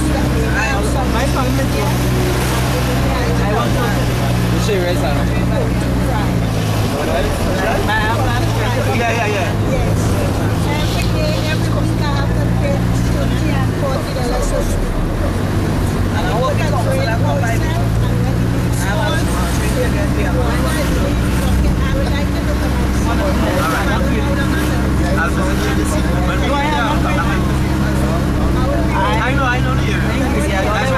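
Minibus taxi engine running, heard from inside the passenger cabin, its low drone shifting in pitch about seven seconds in and again around sixteen seconds in, under people talking.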